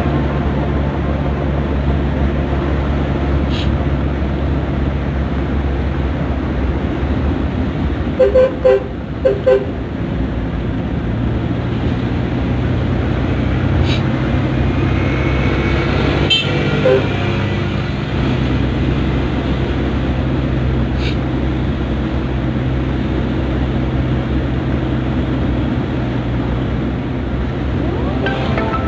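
Suzuki Carry's engine running steadily while driving, heard from inside the cab. A horn gives four short toots in two quick pairs about eight seconds in, and one more brief toot a little past halfway.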